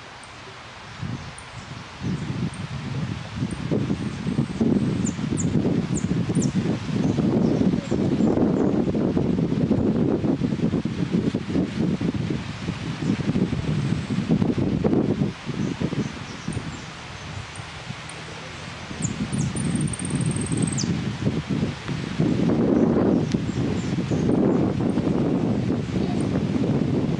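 Gusting wind buffeting the microphone, with leaves rustling, easing off for a few seconds past the middle. A few faint, high bird chirps come through, including one falling note about twenty seconds in.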